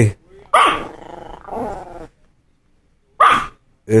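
Small Yorkshire terrier barking at the television, a sharp bark about half a second in that runs on into a lower growl for about a second and a half, with another short loud burst a little after three seconds.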